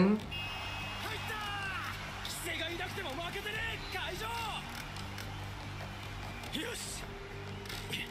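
The anime episode's soundtrack playing at low level: a character's dialogue, subtitled in English, over steady background music.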